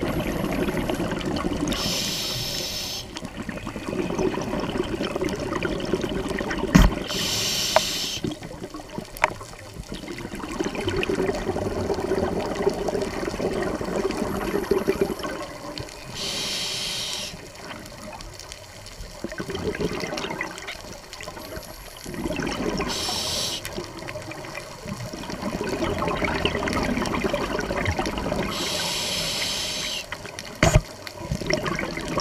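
A scuba diver breathing through a regulator underwater, about five breaths. Each is a brief hiss on the inhalation followed by a longer burbling rush of exhaled bubbles. There is a single sharp knock about seven seconds in.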